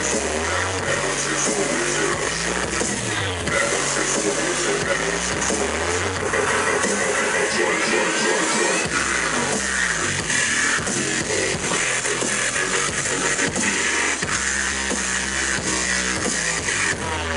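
Live dubstep played loud over a concert sound system, with deep bass notes that shift in pitch every second or so under a dense electronic layer.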